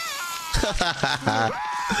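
A high, wavering, wailing cry from a cartoon soundtrack, starting suddenly about half a second in, followed by laughter near the end.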